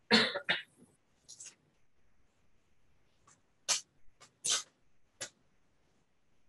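A person coughing, a loud double cough right at the start, followed by several short, scattered high-pitched noises.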